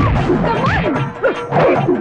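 A rapid run of film punch-impact sound effects, several hits a second, over loud background music.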